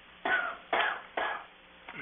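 A person coughing and clearing their throat: three short coughs about half a second apart.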